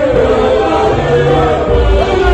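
A mixed choir of women and men singing a gospel song through handheld microphones, over a few held deep bass notes.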